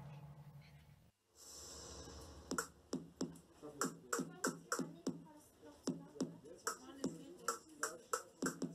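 Short percussive sounds played from a laptop, triggered by touching contacts wired to a Makey Makey board: sharp hits with short tails, roughly two a second, from about two and a half seconds in. Before them a held electronic tone fades and cuts off about a second in.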